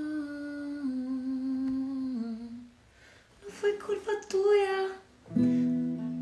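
A woman humming a slow melody in long held notes that step down in pitch, then singing a short line over a few acoustic guitar strums. About five seconds in, a strummed acoustic guitar chord rings on.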